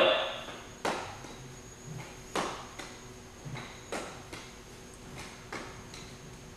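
A nunchaku being twirled and caught, with a sharp knock about every one and a half seconds as the stick is caught: four main knocks, with fainter ones between them.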